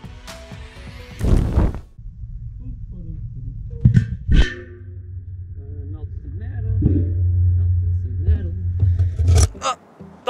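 Background music breaks off about a second in with a sudden loud whoosh. Then comes a muffled low rumble from inside the empty trash-can furnace as its steel lid is handled, with two sharp knocks close together midway. The rumble swells and cuts off suddenly near the end.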